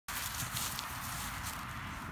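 Rustling and crunching of dry, dormant grass as a tracking dog and its handler step across it, with a few sharper crackles.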